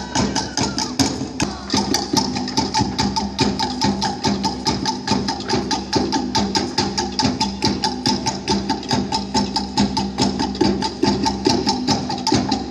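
Polynesian dance music: fast, very even wooden drum strokes, about six a second, keeping a driving beat.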